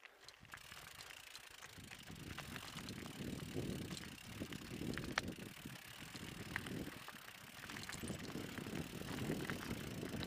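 Mountain bike rolling down a rocky, loose-gravel trail: tyres crunching over stones and the bike rattling, with scattered sharp clicks. A low rumble builds from about two seconds in and swells and fades unevenly.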